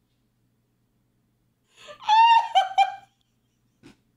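A person's high-pitched squealing laugh, starting about two seconds in and breaking into three or four short shrieks within about a second.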